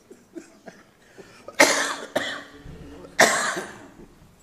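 A person coughing twice, two loud coughs about a second and a half apart.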